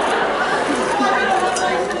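Many people talking at once in a large hall: audience chatter and murmur.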